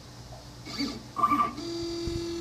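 Stepper motors of a Shapeoko CNC machine driving the marker-carrying head between dot positions: a steady, low-pitched whine with overtones that starts about one and a half seconds in, after two short, higher-pitched movement sounds.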